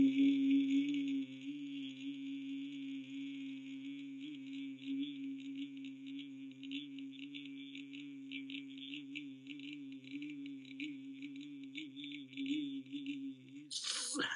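A man humming one low note, held steadily with a slight waver; it is louder for about the first second, then carries on more quietly, and ends in a quick falling slide.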